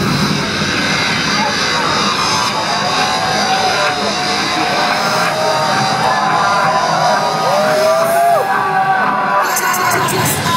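Electronic dance music from a club sound system, in a breakdown: the bass and beat drop away, leaving a dense hissing wash with gliding synth tones. The hiss cuts off just before the end, ahead of the beat's return.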